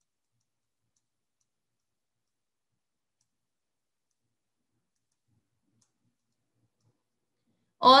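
Silence, broken only by a woman's voice starting right at the end.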